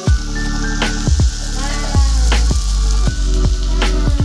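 Background music with a strong bass and a drum beat.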